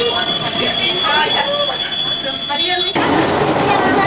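Metro train heard from inside the carriage: a steady high-pitched whine runs over passengers' voices, then cuts off abruptly about three seconds in, giving way to a rougher running noise with chatter.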